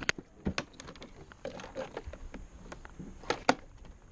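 A few sharp clicks and light knocks at irregular intervals, the loudest pair about three and a half seconds in, of small hard objects being handled.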